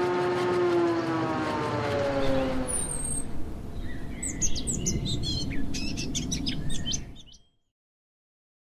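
Logo intro sound design. A pitched drone with several tones slides down in pitch over the first two and a half seconds. Then birds chirp rapidly over a low rumble, and everything cuts off about seven and a half seconds in.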